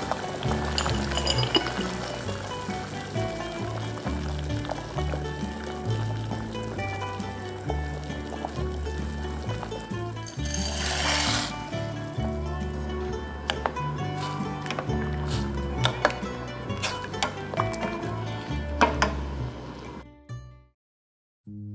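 Background music with a steady bass line runs throughout. About ten seconds in there is a brief rushing pour of dry fusilli pasta tipped from a bowl into a pot of boiling water.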